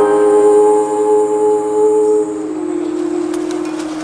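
Live acoustic music: a woman's voice holding long sung notes over a ringing acoustic guitar chord, getting quieter about two seconds in as one note ends and the others sustain.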